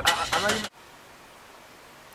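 A man's voice outdoors, cut off abruptly less than a second in, followed by a faint steady hiss of room tone.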